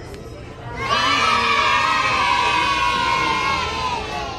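A group of children cheering in one long, held shout that starts suddenly about a second in and trails off at the end.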